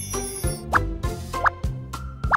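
Upbeat children's background music with a steady beat, over which two short rising cartoon 'bloop' pop sound effects play, about a second apart.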